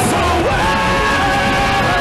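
Power metal band playing live, with male vocals over guitars and drums; about half a second in, the voices settle into a long, high, held note with vibrato.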